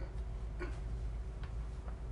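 A few faint, irregularly spaced clicks over a steady low hum.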